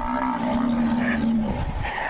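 A rhino calling: one long, low, drawn-out call that stops about a second and a half in.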